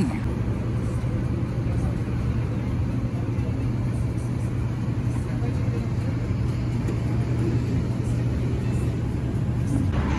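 A steady low engine hum with a constant drone throughout, over a low background rumble.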